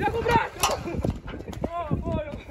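A bucking young bull's hooves thudding irregularly on soft arena dirt, with men shouting over them.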